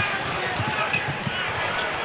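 Basketball dribbled on a hardwood arena court, a short low thump every third of a second or so, over steady arena crowd noise.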